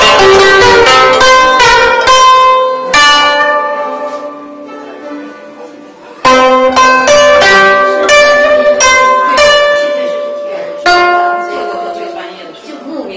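Guzheng being played: a run of plucked notes, then one note left ringing and slowly dying away for about three seconds. A new phrase of plucked notes starts about six seconds in and ends on a note that rings out.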